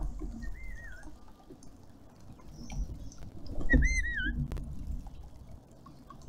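A bird's warbling whistled call, given twice: a short one about half a second in and a louder one near the four-second mark, over the steady trickle of a small garden fountain.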